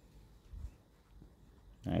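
Quiet outdoor background with a single brief low thump about half a second in; a man's voice starts speaking near the end.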